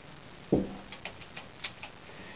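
A knock about half a second in, then a quick run of light clicks as the limb clamp of a Nighthawk bow press frame is handled and fitted onto a compound bow limb.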